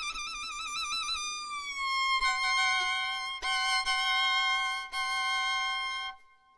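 Solo violin played live: a long high note held with a wide, wavering vibrato slides down to a lower pitch, then two notes are bowed together as a held double stop, with bow changes about halfway through and near the end.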